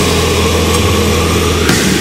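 Technical death metal recording: distorted guitars and bass holding a low, droning chord, with a cymbal crash near the end.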